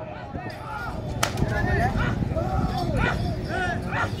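A single sharp whip crack about a second in, followed by handlers' repeated shouted calls as a pair of bulls starts hauling a weighted sled.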